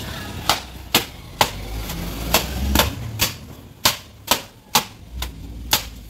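Wet clothes slapped hard against a stone washing slab in hand laundry, a sharp smack about twice a second, eleven or so strikes.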